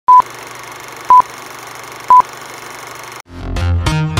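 Film countdown leader sound effect: three short, loud beeps one second apart, one for each number of the countdown, over a steady hiss. Music with a quick run of plucked-sounding notes starts in the last second.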